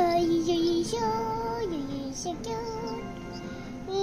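A child singing wordless notes, holding several tones and sliding down between some of them.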